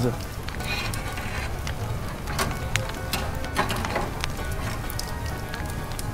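Skewered chicken thighs sizzling over hot charcoal embers: a steady sizzle with scattered sharp crackles and pops as fat and juices drip onto the coals.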